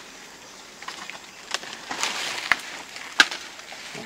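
Leaves rustling and stems snapping as leaves are picked by hand from a shrub, with several sharp clicks over a faint hiss.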